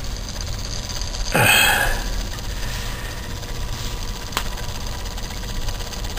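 Small homemade Newman motor running steadily: a magnet rotor spinning on a straightened-paperclip axle in paperclip bearings over a wire coil. A brief rush of noise comes about a second and a half in, and a single click near the middle.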